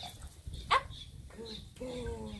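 A bulldog puppy gives one short, sharp yip, then whines in falling tones as it begs up at a raised hand.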